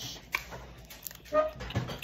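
A candy wrapper being handled and picked open by a child's fingers, giving a few faint clicks and crinkles. A short, high, held voice sound comes a little past the middle.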